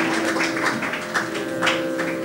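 A steady drone holding on two pitches, with a few scattered hand claps over it as applause thins out.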